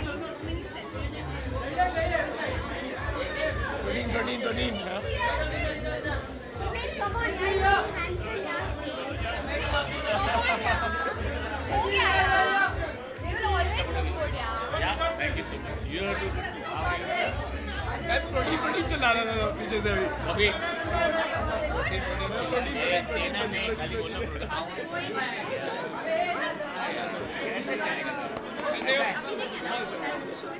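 Many people talking over one another in a large, echoing room, with the low beat of background music underneath that stops about 25 seconds in.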